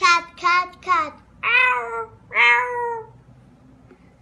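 A young girl's voice imitating an animal call in high, falling, cat-like or moo-like calls. There are three short calls in the first second, then two longer drawn-out ones.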